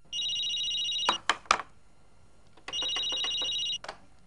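Corded landline desk telephone ringing twice with a high electronic trill, each ring about a second long, with a few sharp clicks between the rings.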